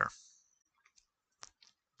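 A few faint computer-mouse clicks, the loudest about one and a half seconds in, as an on-screen button is clicked.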